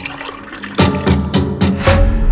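Dramatic trailer score. After a quieter, airy start, a loud low swell comes in about a second in, struck through with several sharp percussive hits, and a deep boom lands at the end.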